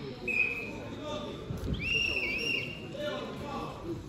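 Murmur of voices echoing in a large sports hall, with two brief high-pitched tones: a short one near the start and a longer, slightly wavering one about two seconds in.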